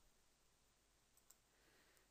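Near silence: room tone, with one faint click a little past halfway.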